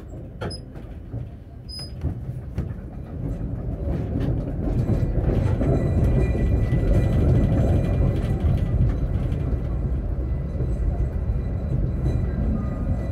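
Electric tram, heard from inside, pulling away from a stop. After a couple of short clicks and high beeps near the start, the motor and wheel noise builds over the first few seconds and settles into a steady running rumble with a faint high whine as it rolls over the points and into a curve.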